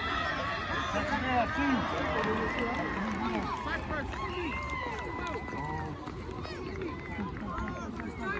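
Many voices shouting and calling over one another from young players and sideline spectators, with a laugh about three and a half seconds in, over a steady low rumble.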